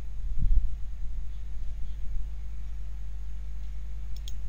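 Steady low electrical hum with a faint hiss: background noise on the microphone, with a brief low bump about half a second in.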